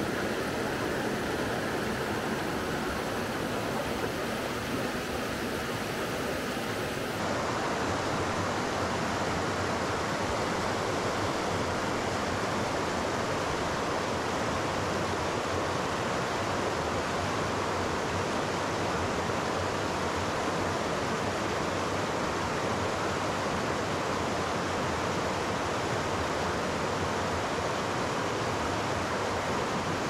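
Steady rushing of flowing river water, stepping up slightly in level about seven seconds in.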